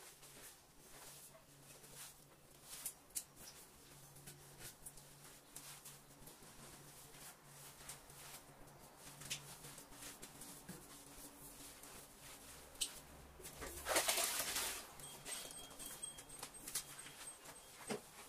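Faint sounds of a string mop being worked over a tiled floor: scattered light taps and scrapes, with one louder swishing scrape about fourteen seconds in, over a steady low hum.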